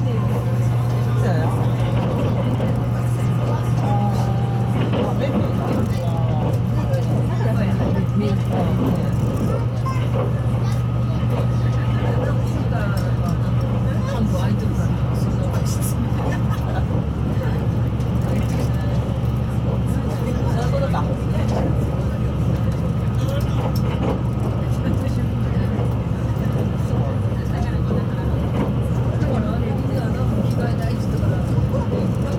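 Cabin noise inside a JR West 681 series electric train's motor car running at speed: a steady low drone of motors and wheels on rail, with no change in pace, alongside the murmur of passengers talking.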